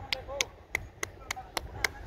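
A steady, regular ticking: sharp clicks at about three to four a second, under faint voices.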